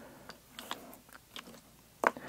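Faint taps and scrapes as tabletop miniatures are moved across a paper dungeon map on a wooden game board: a handful of small, quiet clicks.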